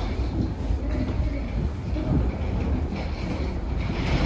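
Low rumble and rattle of a jet bridge walkway as people walk along it.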